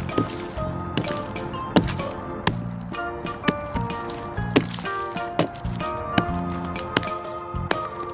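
A hatchet chopping into decaying wood at the base of a tree, sharp strikes about once a second, over background music.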